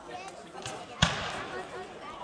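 A firework shell bursting with one sharp bang about halfway through, its report trailing off, a fainter crack just before it. Spectators talk throughout.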